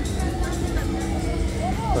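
Funfair ambience: music from the rides and stalls over a steady low rumble, with passing voices of the crowd.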